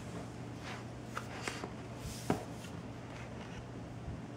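Faint handling noise of an ASUS VivoBook Flip TP301UA laptop being turned in the hands as its screen is swung round on its fold-back hinge, with a few light taps, the clearest about two seconds in.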